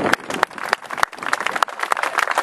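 Scattered clapping from a small crowd: sharp individual claps at an uneven pace, several a second.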